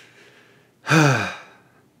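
A man sighs once, about a second in: a breathy, voiced sigh whose pitch falls as it fades.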